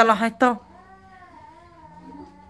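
Brief speech, then a cat meowing faintly in the background: one long, drawn-out call that wavers slightly in pitch.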